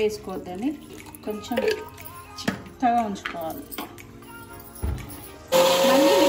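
An electric mixer grinder's motor starts about five and a half seconds in and runs loud and steady, grinding soaked masala with water into a thick paste. A short low thump comes just before it.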